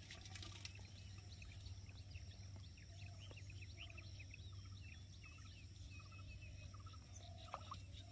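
Faint chatter of small birds: many short, quick chirps overlapping, over a low steady hum.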